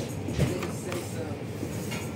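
A paper menu page being turned by hand, rustling, with a soft thump about half a second in as the page falls over.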